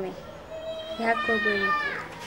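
Speech only: a voice in dialogue, drawing out one long syllable in the second half.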